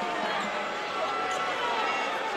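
Crowd in a gymnasium talking at a steady murmur of many overlapping voices, during a pause in play.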